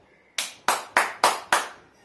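A person clapping their hands five times in an even rhythm, about three claps a second.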